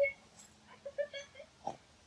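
A dog making short pitched vocal sounds while playing: one at the start, then a quick run of three or four about a second in.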